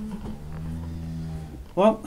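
A Simmental cow mooing: one long, low call that dips slightly in pitch about half a second in.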